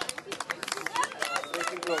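Voices calling out, mixed with a quick run of sharp clicks and taps.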